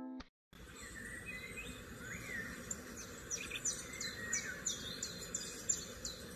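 Birds chirping over a steady background hiss. Toward the end the chirps come as a quick run of short, downward-sweeping calls, about three a second.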